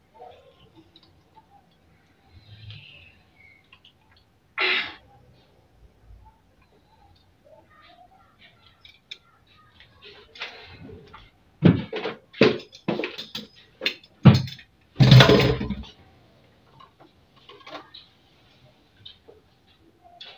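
Kitchen utensils and cups being handled at a stainless-steel sink: a short scrape or clatter about five seconds in, then a run of sharp knocks and thuds, the loudest a clatter of about a second.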